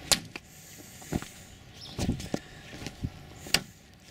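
A few short, sharp clicks and rustles about a second apart over faint outdoor background. They are handling and movement noise from someone walking through a garden with a handheld camera.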